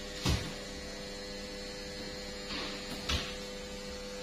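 Steady electrical hum with two dull knocks on a cutting table about three seconds apart, the second just after a short scraping swish.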